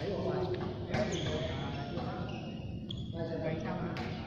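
Badminton rackets striking a shuttlecock during a rally, with a sharp hit about a second in, echoing in a large indoor hall. Voices murmur in the background.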